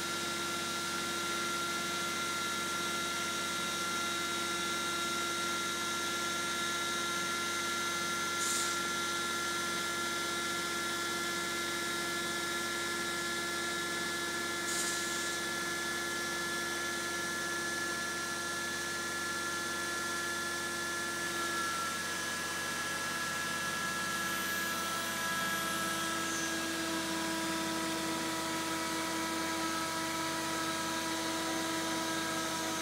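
CNC glass circular saw running, its spindle and blade giving a steady hum with several held tones over a hiss. The tones shift about two-thirds of the way through, and two short hissy swishes come through before that.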